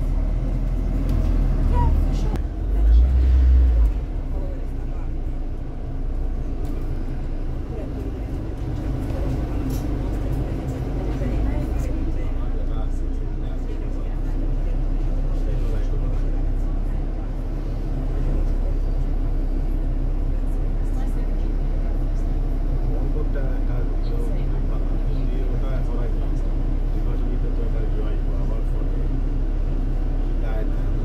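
Cabin sound aboard a London double-decker bus: a steady low engine and road rumble as the bus drives, with a louder surge of low rumble about three seconds in. Passengers talk in the background.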